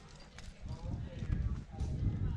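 Rumbling wind and movement noise on a body-worn camera microphone during a rock climb, with a few short clinks of the climbing rack (cams and carabiners) on the harness.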